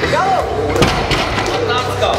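A 200 kg barbell loaded with Eleiko plates is lowered from a deadlift and lands on the lifting platform with a heavy thud just under a second in, followed by a smaller knock. Voices are heard over it.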